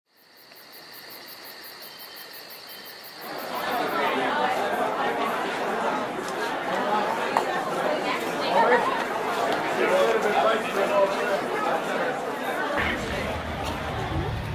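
Crowd chatter: many people talking at once, the babble of a busy restaurant patio. It swells up about three seconds in after a quieter start with a faint high tone, then runs on steadily.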